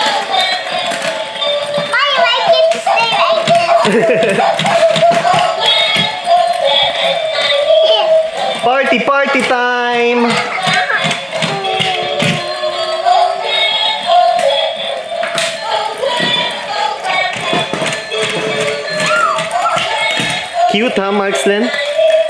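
Battery-operated Dalmatian puppy toy with a disco-light ball playing an electronic dance song with a singing voice, with scattered clicks.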